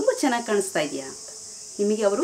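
A woman's voice saying "You are" slowly, then a pause about a second in, over a steady high-pitched background drone that does not change.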